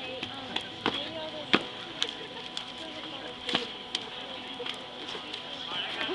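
Irregular sharp slaps of arms and hands striking and blocking in a two-person kung fu sparring set, the loudest about one and a half seconds in, with crowd chatter underneath.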